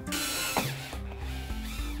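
Cordless drill/driver running as it drives a screw into the storm door's metal hinge. It is loudest for the first half-second, then runs more quietly until near the end, with light background music underneath.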